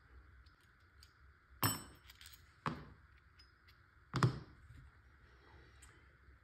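Handling noise from a Tippmann TiPX paintball pistol and its rear air adapter: three short clicks and knocks of the parts against each other and the mat. The first two come about a second apart, and the last, a second and a half later, is a duller thunk.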